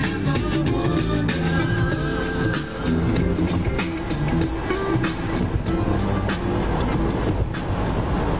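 Music with guitar and drums over the steady road noise of a car driving at highway speed. Near the end the music thins out, leaving the road and wind noise.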